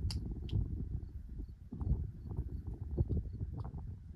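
Outdoor ambience: a low, uneven rumble with irregular soft knocks and faint high chirps repeating several times a second.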